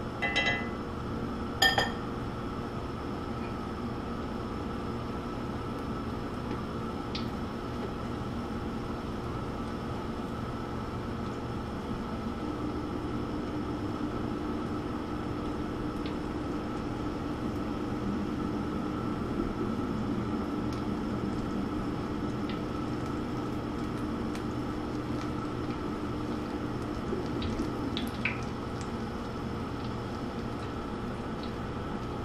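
Battered onion rings frying in oil in a cast-iron skillet: a steady sizzle and bubble. Two sharp clinks of metal tongs against the pan come in the first two seconds.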